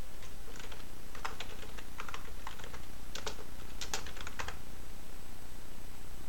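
Computer keyboard keys clicking as a command is typed: an uneven run of keystrokes that stops about four and a half seconds in.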